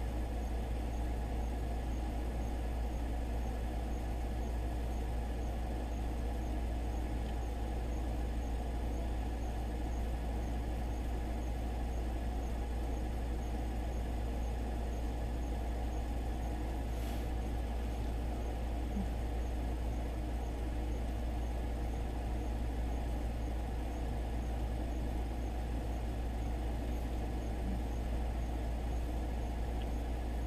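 A steady low hum of background room noise, with one faint click about halfway through.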